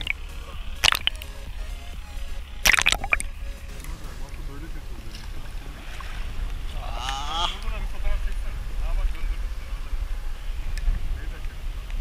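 Sea water splashing and sloshing around a camera held at the water surface beside a kayak, with two sharp splashes in the first three seconds. Then a double-bladed kayak paddle dips and splashes over a steady low rumble, with a short voice about seven seconds in.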